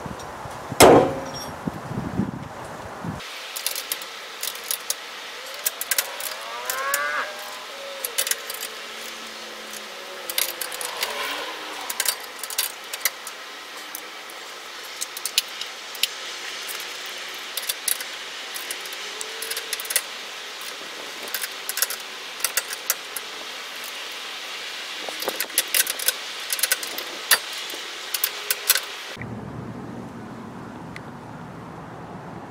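A loud knock about a second in, then scattered light clicks and jingles over a steady background for most of the clip.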